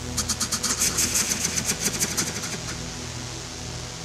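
Electronic music: a fast, even run of crisp high ticks over a low pulsing bass, the ticks fading out about two-thirds of the way through.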